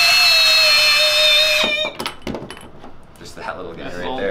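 Cordless drill-driver running at a steady high speed as it takes the bottom part off a juggling torch, then stopping with a short falling whine a little under two seconds in. A few light clicks follow.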